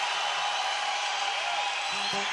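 Audience applauding steadily between band-member introductions.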